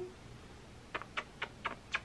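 Five short, sharp clicks in quick succession, about four a second, starting about a second in.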